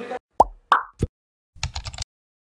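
Synthetic outro sound effects: three quick plops, the first sliding down in pitch, then after a short gap a rapid run of clicks from a keyboard-typing effect.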